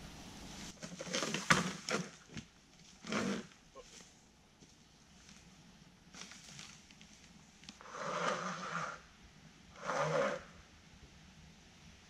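A man grunting and breathing hard with effort while hauling an electric scooter over a fallen log, in several separate bursts, with a few knocks and rustles of leaf litter.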